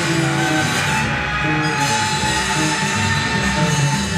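Free-improvised jazz from cornet, two double basses and drums: a long held cornet note from about a second in, over busy low bass notes and constant cymbal wash.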